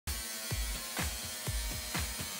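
Angle grinder cutting galvanized sheet metal, a steady high buzz, over background music with a kick-drum beat about twice a second.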